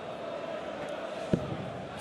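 Steady murmur of a large arena crowd, with a single sharp thud about 1.3 seconds in as a steel-tip dart strikes the Unicorn Eclipse HD2 bristle dartboard.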